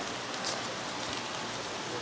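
Newspaper packing rustling faintly as it is lifted out of a styrofoam shipping box, over a steady background hiss.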